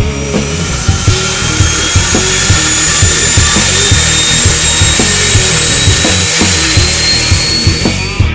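Turboprop aircraft engine running close by: a high whine that rises slowly in pitch and cuts off suddenly near the end, heard over rock music with a steady beat.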